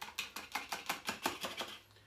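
Rapid, even light tapping on a small metal funnel, about seven taps a second, as dried herbs are worked down through it into a jar; the taps die away near the end.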